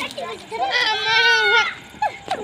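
A child's drawn-out, wavering high-pitched cry lasting about a second, starting about half a second in.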